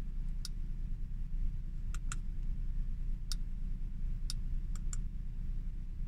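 Audi S5's engine idling with a steady low rumble, with several sharp, light clicks scattered irregularly over it.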